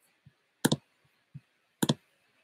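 Two sharp computer-mouse clicks about a second apart, each a quick double click, with faint soft knocks between: the clicks that end a live stream.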